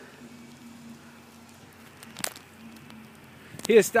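Faint steady outdoor hiss with one sharp click a little past halfway; a man says a word near the end.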